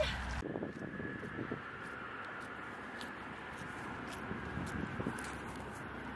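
Steady outdoor background noise with scattered light clicks and rustles, and a faint steady tone underneath.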